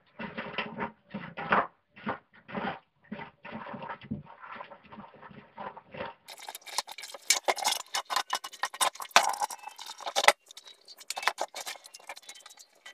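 A stiff bristle brush scrubbing a rusty metal wheel and gear housing under running water, in quick repeated strokes. About six seconds in, the strokes turn brighter and denser.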